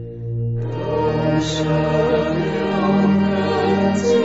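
Buddhist devotional chant set to music. A steady low drone is joined about half a second in by chanted singing with instrumental accompaniment.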